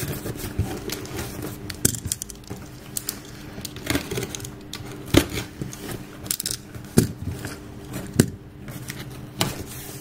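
A cardboard parcel being unpacked by hand: rustling and crinkling of the packaging, with scattered clicks and a few sharper knocks spaced about a second apart through the middle.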